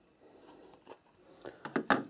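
Quiet handling of clear plastic pieces, then a few light clicks about a second and a half in, ending in one sharper click near the end.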